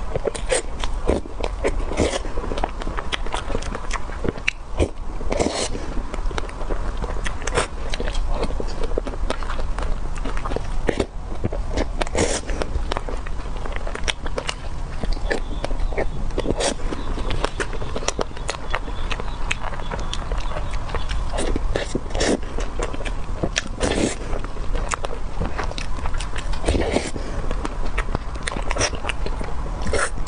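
Eating sounds from mouthfuls of whipped-cream cake taken by the spoonful: wet mouth smacks and chewing clicks, irregular and continual.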